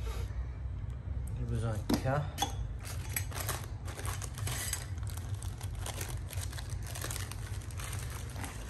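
Plastic hardware bags crinkling as packets of small screws and fittings are handled, a dense run of short crackles from about three seconds in.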